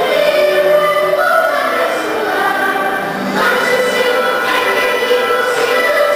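Children's choir singing a Christmas song in held, sustained notes, with a new phrase starting about three seconds in.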